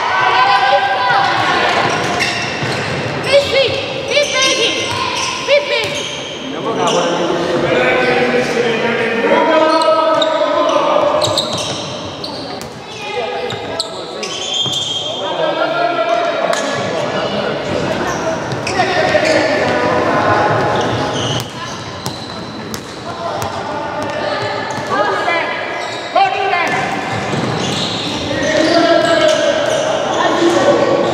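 Youth handball game in a sports hall: a handball bouncing on the wooden floor among near-continuous shouting voices of players and coaches, echoing in the large room.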